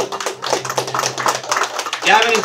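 Small-room audience applause, a dense run of hand claps, while a low final note of the band fades out about a second and a half in.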